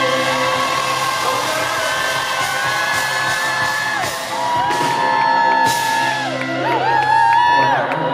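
Live band music with a male lead vocalist singing, and the audience whooping and singing along.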